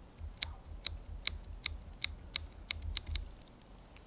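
Sticker being peeled slowly off a plastic bottle, the adhesive letting go in a series of sharp clicks about two or three a second. The clicks come faster around three seconds in and then stop, over a low rumble of handling.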